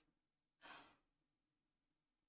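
One short breath from a woman, a brief breathy sigh lasting about a third of a second, in otherwise near silence.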